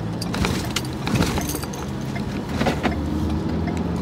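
Car engine running, heard from inside the cabin as the car pulls out of a parking space, with scattered light clicks and rattles.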